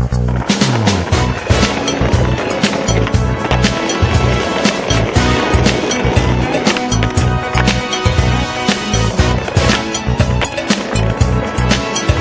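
Skateboard wheels rolling over stone and brick paving, with sharp clacks of the board being popped and landed, mixed under a music track with a steady beat.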